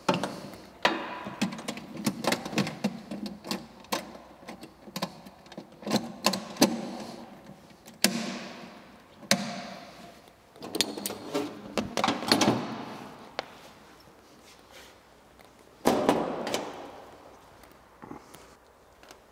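Irregular clicks, knocks and scrapes of a sheet-metal frequency-converter housing being handled and pushed back into place in a mixing pump's steel frame, with a louder clatter about two seconds before the end.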